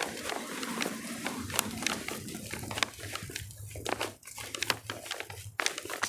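Rustling with irregular crackling clicks over a faint low hum.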